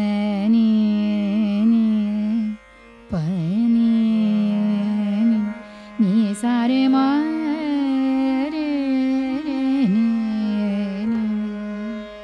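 A woman singing a slow demonstration phrase of Raag Megh Malhar in the lower octave (mandra saptak), in three held phrases. She sways slowly on the notes (andolan).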